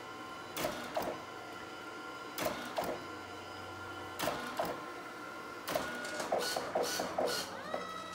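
Photo printer printing a photo-booth strip: a steady motor whine broken by pairs of clicks every second or two, a quick run of clicks late on, and a motor tone that rises and holds near the end.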